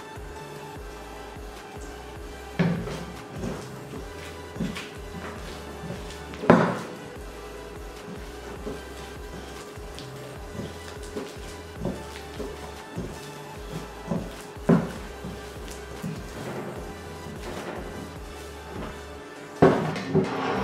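Hands working soft dough in a glass bowl: scattered knocks and thuds of hand and dough against the bowl, the loudest about six seconds in. Background music plays throughout.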